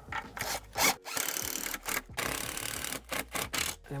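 Cordless drill-driver driving screws through the base of a wall-mounted EV charger into the brick wall, in about four short runs with brief pauses between them.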